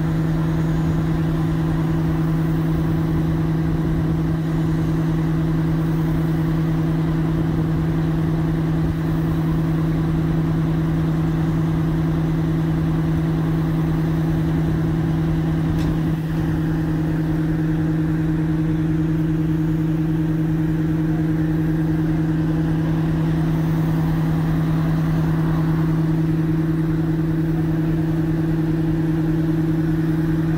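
Fire apparatus diesel engine running at a steady idle: a constant low drone in two pitches, the higher one rising slightly about halfway through.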